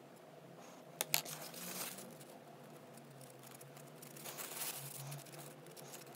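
Two light clicks about a second in, as paintbrushes are set down on a cutting mat, followed by soft rustling and handling noise as the miniature is picked up and turned in the hands.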